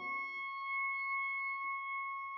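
Church organ holding a single quiet high note on its own, a steady tone with a few overtones. The lower notes fade out in the church's reverberation at the start.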